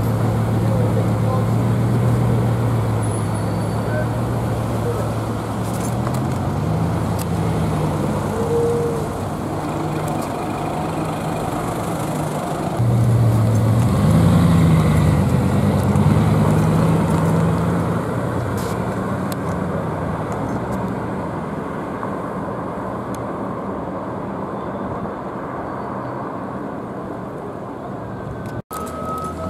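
Sports car engines driving off along a street with traffic around: a steady low engine note that climbs in pitch about six seconds in, then again more loudly about thirteen seconds in as a car accelerates, settling back down after.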